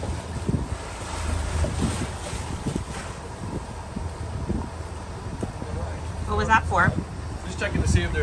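Wind buffeting the microphone over the steady low drone of the catamaran's engine and water rushing past the hull while under way. The engine is being checked for a vibration, which is suspected to come from sargassum fouling the propeller.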